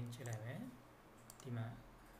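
Computer mouse clicking a couple of times, sharp light clicks, between stretches of a low-pitched voice talking.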